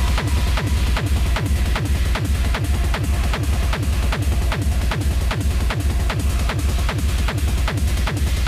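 Electronic dance music played from a DJ set on Pioneer CDJ players and mixer: a loud, fast kick drum at about three beats a second, each kick dropping in pitch, driving on steadily after the track drops in.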